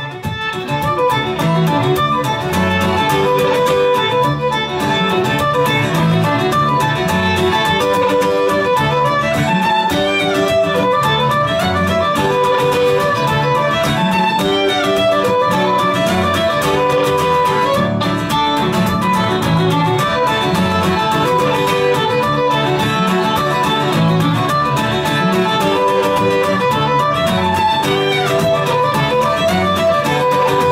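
Fiddle and acoustic guitar playing an Irish instrumental tune together, the fiddle carrying the melody over the guitar's accompaniment.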